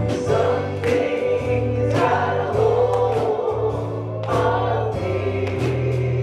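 Live gospel worship music: a keyboard holding low bass notes, a drum kit with cymbal crashes, and singing voices.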